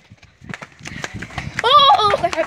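Quick running footsteps thudding on a dirt yard, followed near the end by a loud child's cry that rises in pitch.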